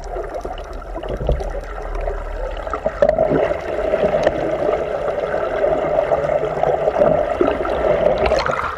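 Strong tidal current rushing past a GoPro's waterproof housing, heard underwater as a continuous rushing, gurgling noise that grows louder about three seconds in as the camera rises toward the surface.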